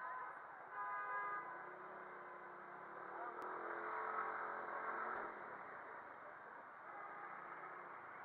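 City traffic noise around a Suzuki Address 110 scooter moving slowly between cars, with a short car-horn toot about a second in. The engine and road noise swells for a couple of seconds in the middle.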